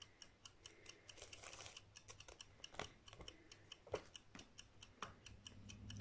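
Faint, even clockwork ticking, about four ticks a second, in an otherwise quiet room.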